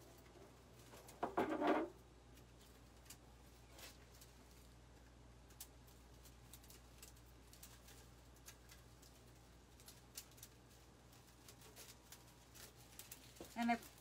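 Faint rustling and light clicks from handling a grapevine wreath and its ribbon bows, with one louder rustle about a second and a half in.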